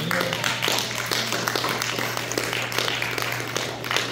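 Congregation clapping and applauding, many hands at once, over a steady low hum.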